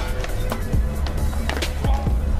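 Music with a steady bass line playing over a skateboard: wheels rolling on concrete and a few sharp knocks of the board.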